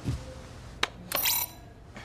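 A dull thud, then a sharp click a little under a second in, then a short, bright ringing clink that sounds for under half a second.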